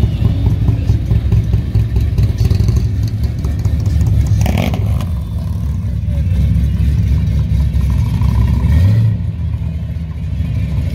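First-generation Chevrolet Camaro engine running with a low exhaust rumble as the car drives past at low speed, rising in pitch just before the end as it accelerates away.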